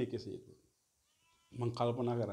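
A man speaking, with a pause of about a second in the middle; in the pause a faint, short, high-pitched sound is heard.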